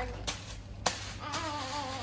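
A baby vocalizing softly: a faint, drawn-out wavering sound in the second half, after a single light click about a second in.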